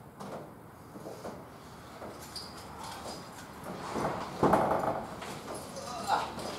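Quiet scuffs and knocks, then a louder clatter about four and a half seconds in as a car door is opened; the engine is not yet running.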